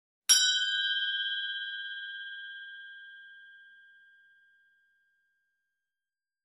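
A single bell-like chime struck once, ringing with a clear high tone that fades away over about four seconds.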